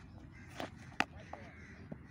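A single sharp knock about halfway through as the cricket ball is struck or gathered, over faint open-air background noise.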